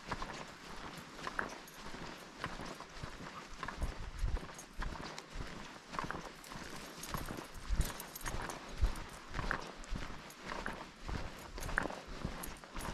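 Footsteps on a dry dirt trail at a steady walking pace, about two steps a second.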